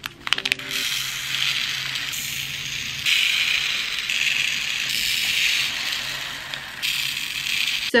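Tiny glass seed beads pouring and rattling out of small plastic bags into a clear plastic compartment bead box, with the bags crinkling. It is a continuous hissy rattle that jumps abruptly in loudness several times.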